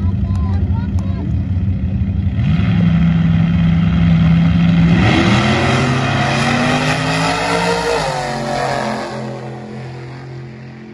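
Two drag race cars running down the strip, their engines loud and steady, then climbing in pitch for about three seconds before dropping about eight seconds in. The sound then fades as they get farther away.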